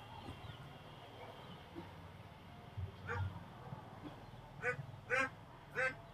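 Quiet room tone with a few faint, short murmurs from a man's voice: one about three seconds in and three more close together near the end.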